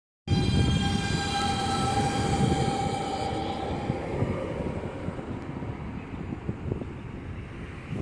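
BSVG GT6S low-floor tram passing close by and pulling away: a rumble of wheels on rails with a steady high-pitched whine that dies out about halfway through, the whole sound fading as the tram moves off.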